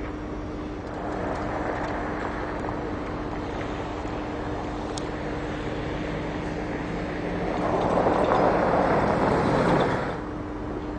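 Steady rushing wind noise on the camera microphone over a constant low engine hum, swelling louder in the last two seconds and cutting off abruptly at the end.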